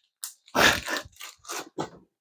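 Several short bursts of crinkling and handling noise from a plastic packet being handled, the loudest about half a second in.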